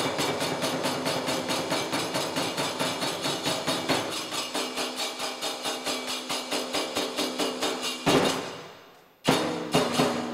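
Kagura accompaniment of taiko drum and kane hand cymbals playing a fast, even beat of about four strokes a second. About eight seconds in the beat stops on a loud stroke that rings out and dies away, followed by a few single strokes just over a second later.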